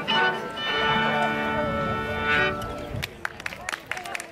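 Two fiddles and a guitar holding a final chord that stops about two and a half seconds in, followed by scattered hand-clapping from the audience.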